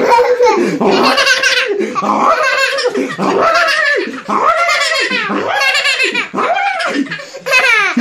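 A small child's belly laughter while being nuzzled and tickled: a run of high-pitched peals of laughter, about one a second.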